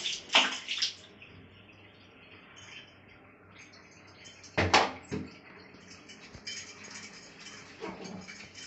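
Wet, soapy hands rubbing and splashing on a baby's skin during a bath, with several short bursts of noise near the start and one louder, brief noise about halfway through.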